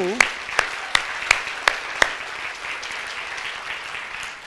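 Church congregation applauding. A few loud single claps stand out in the first two seconds, and the applause dies down toward the end.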